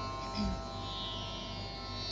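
Steady tanpura-style drone: many held notes ringing together without change, the pitch reference for singing a raga. A soft, brief low sound about half a second in.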